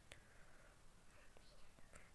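Near silence: faint room hiss, with one light click just after the start and a couple of fainter ticks later, from a metal lipstick tube being handled and twisted up.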